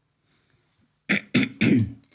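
A man coughs three times in quick succession, clearing his throat.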